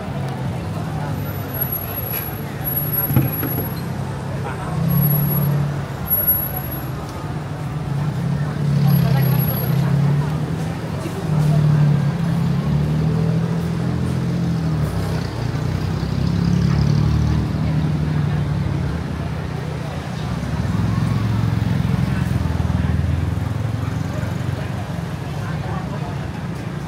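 Busy city street ambience: motor traffic running past and the chatter of a crowd of pedestrians, steady throughout.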